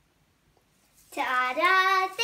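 A young girl's voice singing one long held note, starting about halfway in after a near-silent first second.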